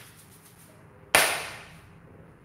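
One sharp hand clap a little over a second in, dying away over about half a second.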